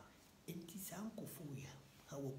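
A man speaking, after a brief pause about half a second long.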